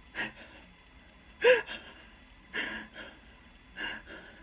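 A person acting out frightened, stifled breathing: four short gasps about a second apart, made through hands held over the mouth, the second one the loudest. It is light, scared breathing, mimicking someone hiding from a killer.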